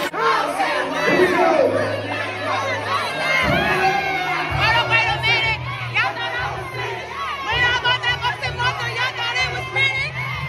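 A crowd of guests cheering, shouting and whooping over dance music, whose steady bass comes in a few seconds in.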